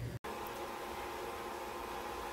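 Steady hum of kitchen appliances running, mostly a food dehydrator's fan with a washing machine going, a faint even whir with a few steady tones.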